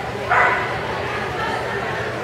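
A dog barks once, short and sharp, over a murmur of background talk.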